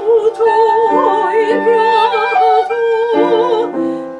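A soprano sings a Baroque aria in sustained notes with a wide vibrato, accompanied by clarinet and upright piano.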